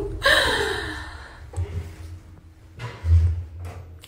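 A woman's breathy vocal sound, a short gasp-like exhale that fades over about a second, followed later by a couple of soft low thumps.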